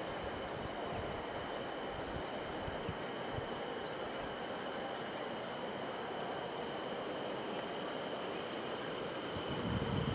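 Steady rush of the fast-flowing Ganges river, with a few faint high chirps in the first few seconds. Wind rumbles on the microphone near the end.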